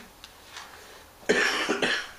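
A person coughing: a sudden, loud double cough about a second and a half in.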